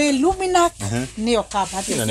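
People talking, with voices running through the whole stretch and a short hiss toward the end.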